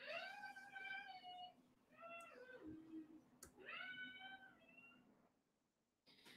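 A young child's faint, high-pitched voice crying out three times, each a drawn-out call of about a second.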